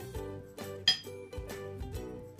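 Instrumental background music; about a second in, a metal spoon clinks once against a ceramic bowl with a short bright ring.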